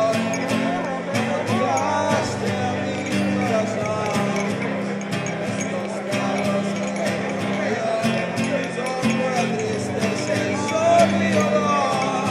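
Acoustic guitar strummed in a steady rhythm, playing a song's instrumental introduction.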